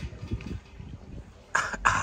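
Low background rumble, then a short, loud burst of a person's voice or breath about a second and a half in, repeated once just before the end.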